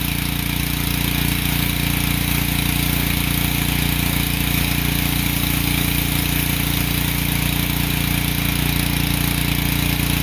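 Ryobi pressure washer running steadily while its wand sprays water onto a pickup truck to wet it down: an even motor-and-pump hum under the hiss of the spray.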